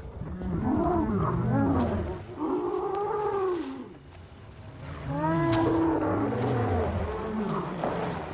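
Torosaurus dinosaurs calling: a series of deep calls from the film's sound design, each rising and then falling in pitch. There is a lull about four seconds in, then a longer call follows.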